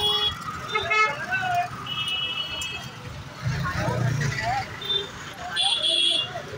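Busy street traffic with short vehicle horn honks: one about two seconds in, a brief one near five seconds and another near the end, over a steady background of traffic and a passing engine's rumble around four seconds in.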